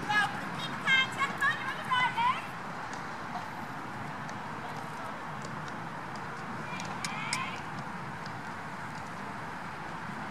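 A high voice calling out a few short times in the first two seconds and once more around seven seconds, over steady outdoor noise.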